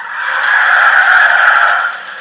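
A whoosh sound effect in a film trailer: a loud swell of hiss that builds over about a second, holds, then fades away near the end.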